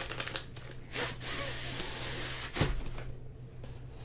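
A rolled diamond-painting canvas sliding out of a cardboard tube, a rustling, scraping slide, with a dull thump a little past halfway.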